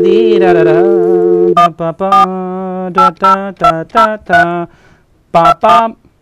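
Telephone dial tone, two steady tones together, with a man's voice humming loudly over it; the dial tone stops about a second and a half in as the number is dialled, and he keeps up a run of short sung syllables over the dialling to keep the number from being heard.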